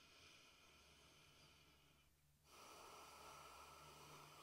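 Near silence: room tone with faint breathing.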